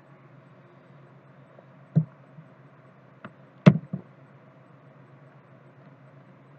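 A few sharp clicks and knocks at the computer desk, one about two seconds in and a close cluster a little past halfway, the loudest there. Under them is a steady low hum.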